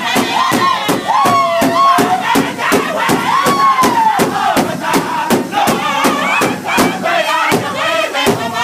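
A powwow drum group singing in full voice over a large shared hide drum, struck together by several drumsticks in a fast steady beat of about four strokes a second. High voices slide up and down above the group song.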